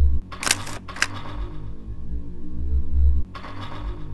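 Two sharp clicks about half a second apart, the first a little longer, over a low ambient drone that swells and cuts off suddenly, about three seconds apart: interface sound effects as the map's 'Enter' arrow is clicked.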